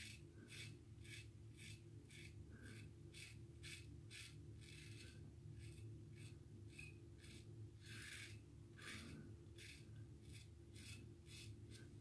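Faint, quick strokes of a safety razor scraping stubble through shaving lather, about two or three short scrapes a second with brief pauses. The razor is an aggressive one with a lot of bite.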